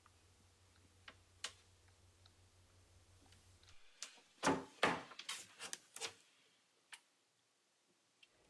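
A cabinet door and its knob being handled: a couple of light clicks, then a quick run of louder knocks and clicks from about four to six seconds in, and one last click near the end.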